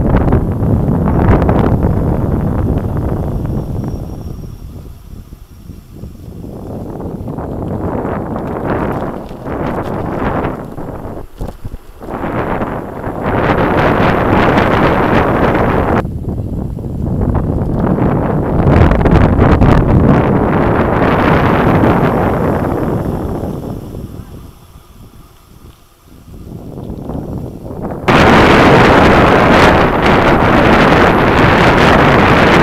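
Wind buffeting the microphone of a camera riding on a mountain bike, a loud rushing noise that swells and fades every few seconds, changing abruptly twice, about halfway and near the end.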